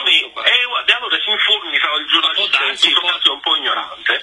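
Only speech: men talking in Italian over a telephone line in a radio interview, with the thin sound of a phone call.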